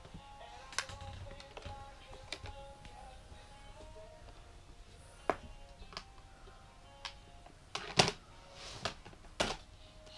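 Soft music with a simple melody plays throughout, over a handful of sharp clicks and knocks of a hard plastic laundry basket and plastic clothespins being handled, the loudest about eight seconds in and another near the end.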